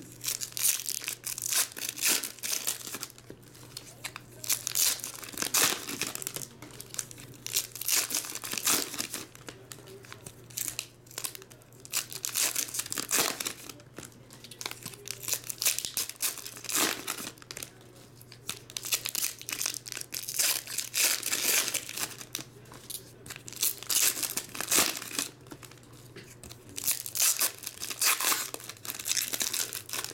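Foil trading-card pack wrappers being torn open and crinkled by hand, in repeated irregular bursts. A faint steady low hum runs underneath.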